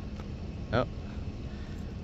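Steady low background rumble with a faint hum, the kind of ambient noise that traffic or machinery gives; a man's brief exclamation cuts in once.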